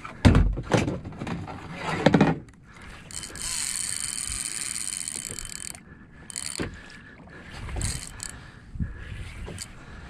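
Knocks and thumps of a kayak's plastic hatch lid being handled. Then a fishing reel's drag screams steadily for about three seconds as a hooked fish takes line, followed by a few light knocks.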